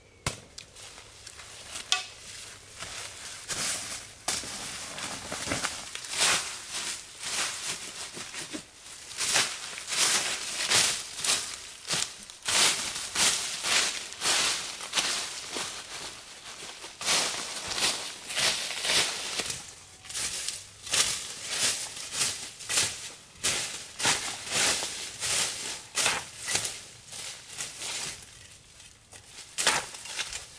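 Digging around a bamboo shoot in forest soil and dry leaf litter: irregular scraping and crunching strokes, coming thick and fast, often one or two a second, through the middle and later part.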